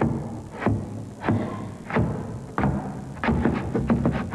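Dance shoes shuffling and striking a stage floor in a train-shuffle dance, imitating a steam locomotive's chuffing as it gets under way. The strokes come about once every two-thirds of a second, then quicken near the end as the 'train' picks up speed.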